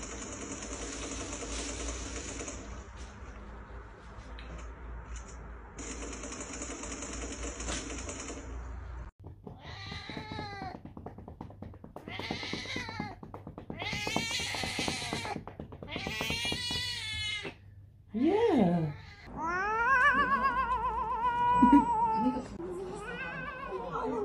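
A steady hiss for the first nine seconds, then a domestic cat meowing: a series of separate drawn-out meows that rise and fall in pitch, the last few longer and wavering.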